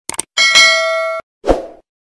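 Subscribe-animation sound effects: a quick double mouse click, then a bell-like notification ding that rings for under a second and cuts off abruptly, followed by a short low thud.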